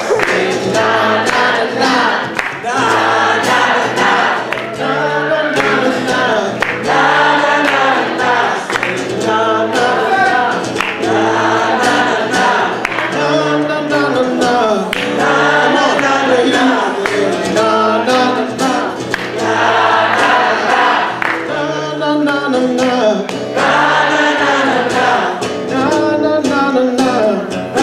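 Live singing accompanied by a steadily strummed acoustic guitar.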